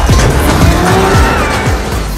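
Film soundtrack of a street race: car engines revving and tires squealing, with gliding rises and falls in pitch, mixed with loud music.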